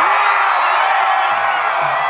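Arena concert crowd cheering and whooping, a dense, steady wall of voices.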